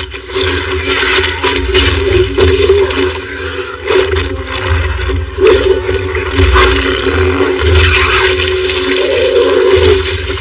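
Loud, continuous rushing noise over a deep rumble from an action-film sound mix, with no clear speech or music.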